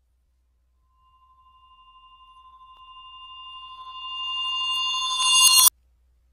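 A synthesized electronic tone that fades in about a second in, swells steadily louder with a slight pulsing as higher tones join it, then cuts off abruptly near the end.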